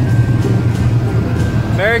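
Low, steady engine hum of a lighted parade vehicle rolling slowly past on a wet street, with faint music under it. A voice calls out "Merry" right at the end.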